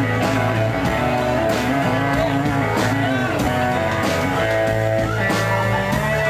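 Live country band playing an instrumental passage: a lead guitar line with bending notes over strummed acoustic guitar, a held bass line and a steady drum beat.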